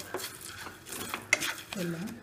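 A spatula stirring and scraping whole spices (coriander seeds, dried chillies, cumin) as they roast in a pan, a run of irregular rasping strokes.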